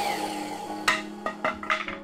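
Sliding compound miter saw blade winding down in a falling whine just after a cut, then several sharp wooden knocks through the second half as the cut board is handled on the saw table.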